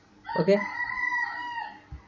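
A long, high-pitched animal call held for about a second and a half on two steady pitches, starting just after a spoken 'okay'.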